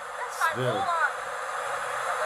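Speech: a voice talking briefly over a steady background hiss.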